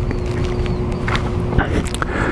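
Suzuki Boulevard C50T motorcycle's V-twin engine running with a low, steady rumble, with a few sharp clicks over it.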